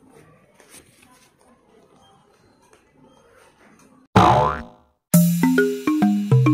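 Faint background noise of a busy shopping mall for about four seconds. Then a loud cartoon 'boing' sound effect that sweeps down in pitch and dies away within half a second, followed a moment later by bright music of short plucked, marimba-like notes.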